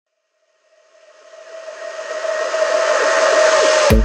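Coast Guard helicopter's turbine whine and rotor-wash noise at the open cabin door during a hoist. It fades in from silence over about two seconds to a steady, loud roar, then is cut off near the end by electronic music.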